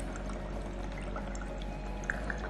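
Aquarium air pump's aerator bubbling steadily in a glass of water, aerating it to serve as the oxygen-saturated calibration solution for a dissolved-oxygen meter probe.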